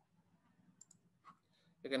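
A few faint, short clicks of a computer mouse, then a man starts speaking near the end.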